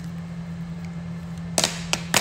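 Sharp knocks from a smartphone being handled and set down, one about a second and a half in and a smaller one near the end, over a steady low hum.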